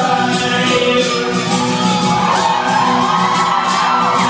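A steel-string acoustic guitar strummed hard in a fast, even rhythm, with a man singing over it through a live amplified sound system.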